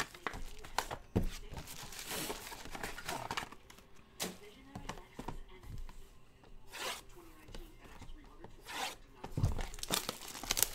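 Clear plastic shrink-wrap being torn and crinkled off a sealed trading-card box, in irregular crackles with a few sharper snaps and light knocks as the box is handled.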